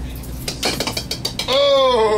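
Bowling pins knocked over by a rolled ball: a quick run of clattering knocks. Then comes a loud, drawn-out yell that falls in pitch, which is the loudest sound in the clip.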